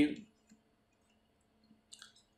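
A man's voice trails off at the start, then near silence broken by a few faint clicks of a stylus on a drawing tablet as a word is handwritten, one about half a second in and a couple near the end.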